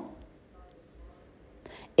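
A pause in a woman's narration: her last word fades out, then near-quiet room tone, and a faint breath just before she speaks again.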